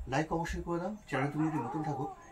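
A man talking. In the second half, a thin wavering whine runs over his voice.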